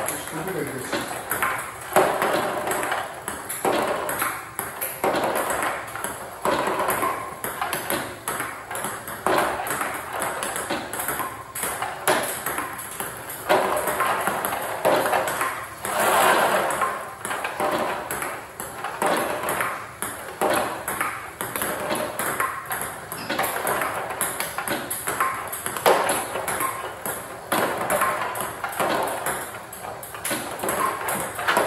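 Table-tennis rally: the celluloid ball clicking off rubber-faced bats and bouncing on the table in a steady back-and-forth rhythm of topspin returns, without a break.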